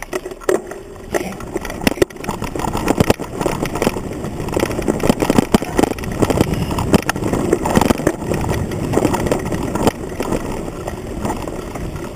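Mountain bike rattling and jolting over a rough dirt trail, its frame noise carried straight into a handlebar-mounted camera: a dense clatter with many sharp knocks.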